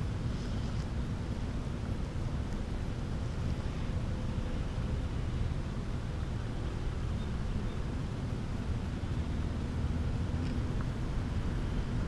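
Wind buffeting the microphone outdoors, a steady low rumble with no distinct events.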